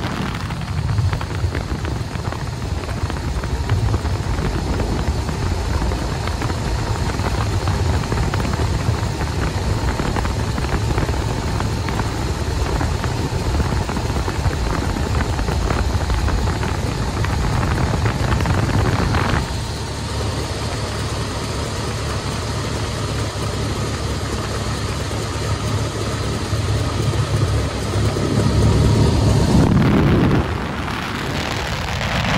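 De Havilland Tiger Moth's four-cylinder Gipsy Major engine running steadily in flight, heard from the open cockpit with wind rushing over the microphone. The hiss thins about two-thirds of the way through, and the noise swells louder near the end.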